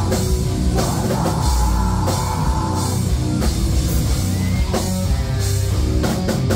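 Live heavy rock band playing loud, with distorted guitar, bass and a pounding drum kit.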